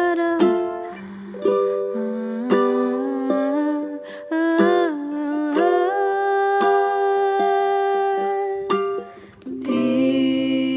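A lullaby: a voice holding long, gliding notes, with plucked-string accompaniment and one long sustained note in the second half.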